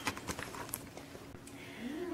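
A spoon knocking and scraping lightly against a bowl of shrimp cocktail mixture as it is stirred, a quick run of small clicks in the first second, then fainter.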